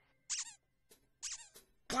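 Two short, high, wavering squeaks about a second apart, each falling in pitch, from a cartoon soundtrack.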